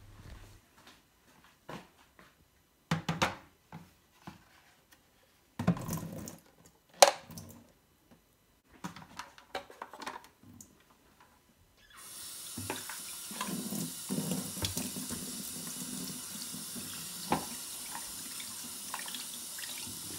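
Scattered plastic clicks and knocks as the washing machine's plastic detergent drawer is pulled out and handled, the sharpest about seven seconds in. From about twelve seconds in, a kitchen tap runs steadily, water splashing over the drawer into a stainless steel sink as it is rinsed out.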